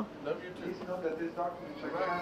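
Faint, indistinct background voices: people talking at a distance, with no clear words.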